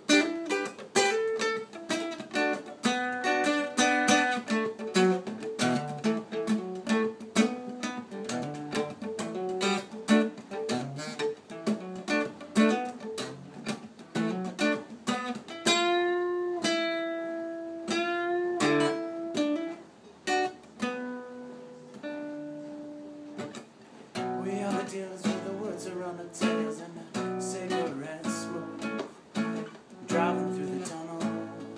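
Solo cutaway acoustic guitar played by hand, a quick stream of picked notes. About halfway through a few notes are left to ring long, then the playing goes quieter for a few seconds before picking up into fuller strumming near the end.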